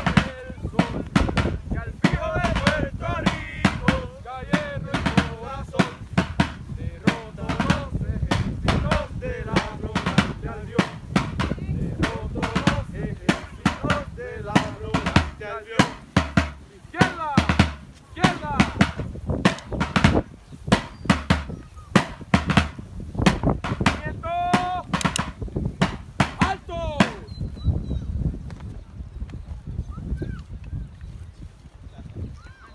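A military field drum beating a steady marching cadence, sharp rapid strokes, with voices talking in the background; the drumming thins out and stops near the end as the column halts.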